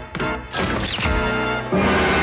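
Dramatic soundtrack music with a loud crash about half a second in, carrying a short falling whistle, and a new held chord that comes in near the end.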